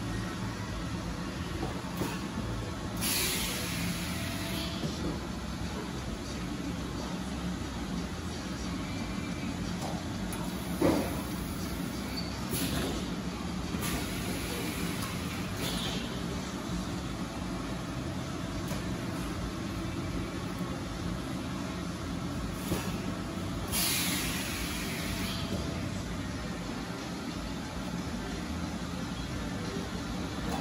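Rotary-table high-frequency plastic welding machine running with a steady hum, with several hisses of air, the longest about three seconds in and again near 24 seconds, and a single sharp knock about 11 seconds in.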